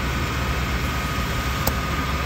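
Car engine idling steadily with the air conditioning running. A single sharp click comes near the end as the AC gauge quick-coupler is released from the high-side service port.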